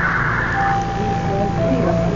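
Subway car passenger PA speakers putting out leaked telemetry data noise: a buzzing data signal that cuts off under a second in. It is followed by a steady electronic tone and then a lower one near the end, over a constant low hum.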